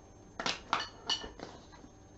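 A handful of short, light clicks and clinks in quick succession, a couple with a brief glassy ring.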